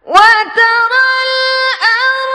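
A woman chanting Quran recitation in the melodic tarannum style. After a pause, her voice comes in sharply and holds long, high, steady notes, with a quick dip in pitch near the end.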